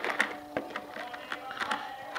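A few light clicks and taps from hands opening the flap of a leather knife sheath's front pouch, over faint steady background music.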